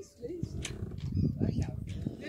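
Indistinct voices mixed with wind buffeting the microphone, an uneven low rumble.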